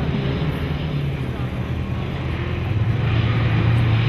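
Off-road racing vehicle's engine running at speed, a steady low drone under a broad hiss, growing a little louder near the end.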